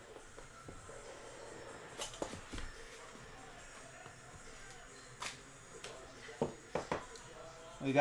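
Cardboard card box and plastic-cased trading cards being handled: a few short clicks and taps about two seconds in, then a quick cluster of three near the end, over a faint low voice.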